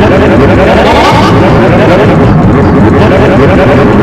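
A loud, unbroken wall of many overlapping, distorted copies of a cartoon's soundtrack layered on top of one another, so that no single voice or tune stands out.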